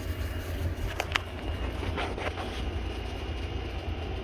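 Subaru WRX STI's turbocharged flat-four idling with a steady low rumble, with the car's air conditioning on. Two sharp clicks about a second in.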